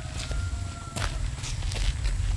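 Footsteps of several people walking on a dirt path: irregular scuffs and crunches, with one sharper step about a second in.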